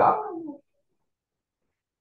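A man's voice trailing off on a drawn-out word for about half a second, then dead silence.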